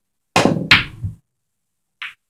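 Pool balls knocking on a pool table: two loud, sharp knocks less than half a second apart, the first with a heavier thump.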